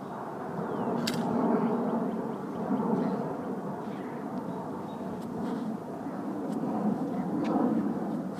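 Steady outdoor background rumble that rises and falls, with a sharp click about a second in.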